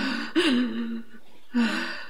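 A woman sobbing: short voiced cries, each rising briefly in pitch and then falling, about three in two seconds with catches of breath between them.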